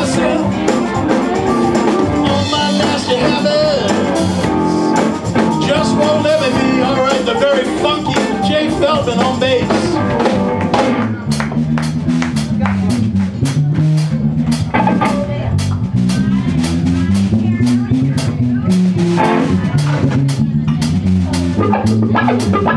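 Live blues-rock band playing, electric guitar and drums in the full band. About ten seconds in, the upper parts drop away and it thins to electric bass and drums, the bass taking a solo line over a steady drum beat.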